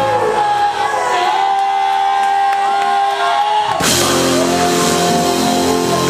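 Live Cajun-zydeco rock band with accordion, electric guitar, drums and congas. The bass and drums drop out for about three seconds, leaving a few long held notes, then the full band comes back in with a crash just before four seconds in.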